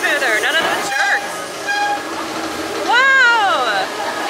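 Roller-coaster riders' voices, ending in a long rising-then-falling call near the end. A brief steady tone sounds about a second in.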